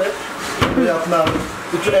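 Doors of a teak-wood wardrobe being swung shut, with a couple of wooden knocks as they close, under a man talking.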